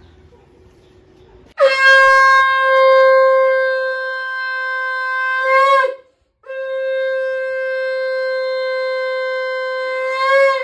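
A conch shell (shankha) blown in two long steady blasts of about four seconds each, with a short breath between them. Each blast bends up slightly in pitch just before it stops.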